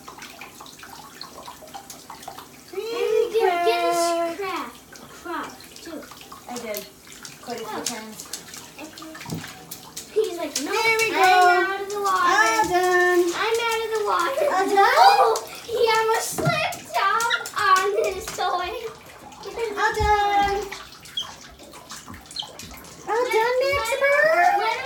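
Hand-held shower spray running over a Moluccan cockatoo in a bathtub, with the cockatoo's high, chattering voice coming in several bouts over the water.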